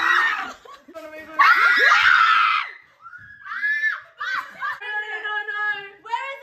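A young woman screaming: a high scream trailing off at the start, then a second long scream about a second and a half in, followed by shorter, quieter high-pitched cries.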